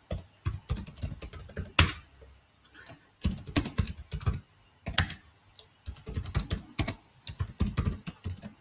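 Computer keyboard typing in quick runs of keystrokes, with a pause of about a second near the middle and a few louder single strokes standing out.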